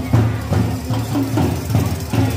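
Marching drums beating a steady rhythm, about two and a half beats a second, over a steady low hum.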